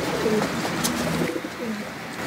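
Domestic pigeons cooing, several short low calls one after another.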